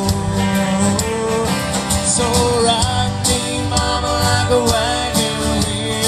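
Live country band playing a song: acoustic and electric guitars over drums with a steady beat.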